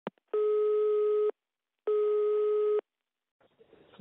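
Telephone ringing for an incoming call: two identical steady electronic tones about a second long each, half a second apart. Faint line hiss comes in near the end as the call is picked up.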